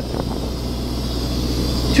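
Steady low hum of an engine running, with a faint steady high hiss over it.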